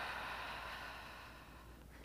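A person's faint, long exhale, breathy and fading away over about a second and a half.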